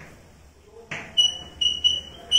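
Chalk squeaking on a blackboard while writing: a quick run of short, high-pitched squeals, one per stroke, starting about a second in.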